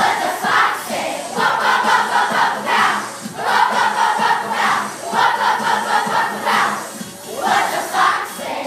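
A large group of children singing together in unison, in loud held phrases about a second long with short breaks between them.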